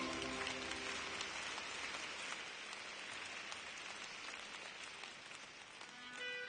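Audience applauding, the clapping slowly dying away, as the last held notes of the song fade out in the first second.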